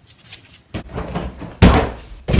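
A gymnast's round-off on an inflatable tumbling mat: a few light running steps, then one loud thump about one and a half seconds in as she lands on it.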